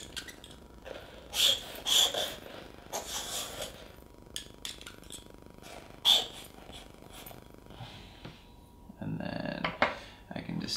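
A metal dip pen scratching across paper in a few short, separate strokes as letters are drawn in ink.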